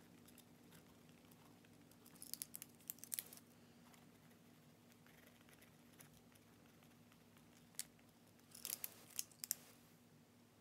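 Retractable gel pens being handled while swatching: two clusters of small sharp clicks and ticks, about two seconds in and again near the end, over a faint steady hum.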